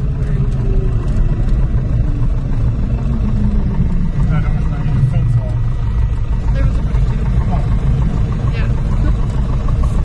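Piper PA-28-160 Cherokee's four-cylinder Lycoming O-320 engine and propeller at full takeoff power, a loud steady drone heard inside the cabin as the plane rolls down the runway and lifts off. A faint tone glides downward over the first few seconds.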